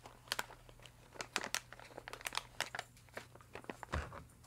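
Snack bag packaging crinkling in irregular crackles as the nut clusters are taken out of it, with a dull bump near the end.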